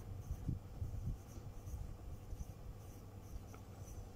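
Faint sound of handwriting with a pen on a paper textbook page.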